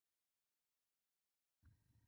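Near silence: the sound track is muted.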